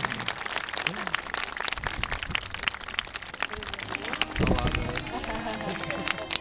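Audience applauding with many scattered hand claps, with a few voices calling out over it.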